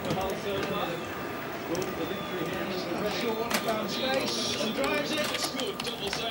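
Indistinct voices talking in the background, with a few sharp clicks.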